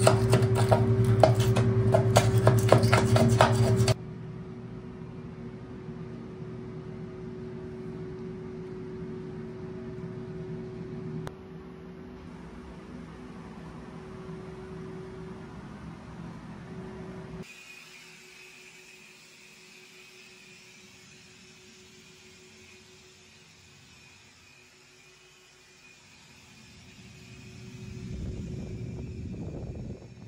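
A hand scraper blade rasping old caulk out of the corner where the tub meets the tiled wall, loud and continuous for about the first four seconds, over a steady mechanical hum. After that only the steady hum is left, quieter, changing in tone about halfway through.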